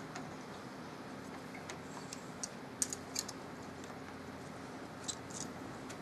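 Faint, scattered small clicks, about half a dozen, over a quiet room: hands working at the wooden flyer and bobbin of a Sequoia spinning wheel while setting it up.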